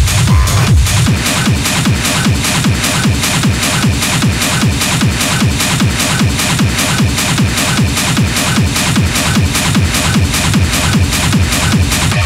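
Hard techno music in a continuous DJ mix: a fast, steady kick drum with dense, regular high percussion over it.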